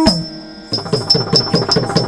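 Yakshagana percussion accompanying dance: after a brief lull, the chande drum starts a fast, dense run of strokes about two-thirds of a second in, with small hand cymbals ringing steadily over it.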